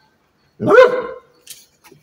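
Black Labrador retriever giving a single loud bark about half a second in, rising and then falling in pitch.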